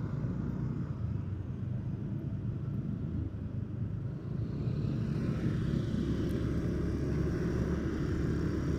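A vehicle on the move in traffic: a steady engine and road rumble that grows a little louder about halfway through.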